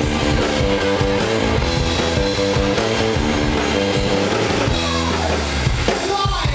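Live rock band playing loud through the stage PA: electric guitars over bass and drum kit. Near the end a guitar slides down in pitch into a held low note.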